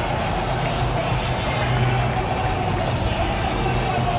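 Steady roar of a packed football-stadium crowd, with sound from the stadium's loudspeakers carrying over it.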